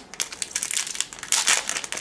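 Foil wrapper of a Japanese Pokémon TCG booster pack crinkling and being torn open by hand, an irregular crackle that gets louder about halfway through.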